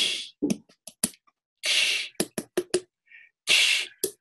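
Whispered 'ee' vowel: three short breathy hisses, broken up by runs of quick sharp mouth clicks. The tongue stays high while the mouth opens wider, which raises the first formant and keeps the 'ee' noise.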